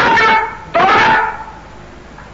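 A man's voice from an old sermon recording, in two long, drawn-out utterances with held, wavering pitch; the second ends about one and a half seconds in, and it is quieter after that.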